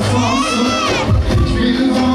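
A high-pitched shout from a wedding crowd, one drawn-out cry that rises and falls over about a second, over loud dance music with a low beat and crowd noise.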